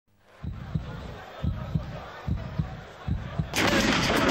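Intro sting with a heartbeat-style effect: paired low thumps, four pairs just under a second apart. About three and a half seconds in, a loud, dense rush of sound cuts in suddenly.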